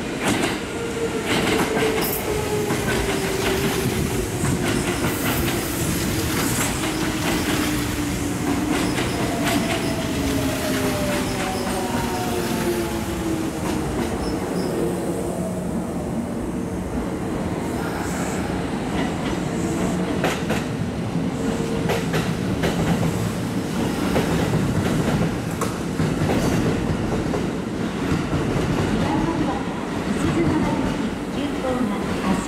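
Kintetsu 2800-series electric train, coupled to a 1233-series set, pulling into the station. Its whine glides down in pitch as it slows over the first half, and the wheels click over rail joints.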